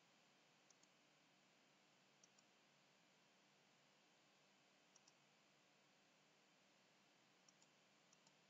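Faint computer mouse button clicks, each a quick press-and-release pair, four times, over near-silent room hiss.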